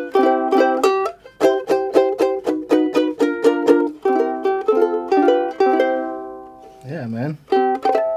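Antique ukulele, about a century old, strummed in quick chords, then sustained chords and single plucked notes, with clear ringing harmonics near the end. A short voice sound comes about seven seconds in.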